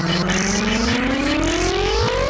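Dark psytrance playing: a pitched synth tone glides steadily upward over the driving beat, building toward a break.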